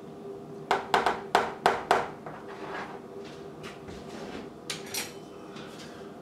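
A spoon knocking against a mayonnaise jar and a mixing bowl: a quick run of about six sharp clinks about a second in, then a few fainter clicks and a short scrape near the end, over a faint steady hum.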